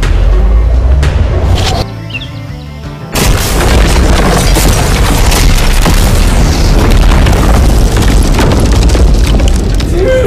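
Explosive blast: loud low booming at the start, a short lull, then a sudden second blast about three seconds in that carries on as a long, dense rumble, with music underneath.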